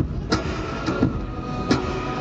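Amplified acoustic guitar played live with hard percussive strums, sharp strikes over ringing held notes, heard through loud arena amplification.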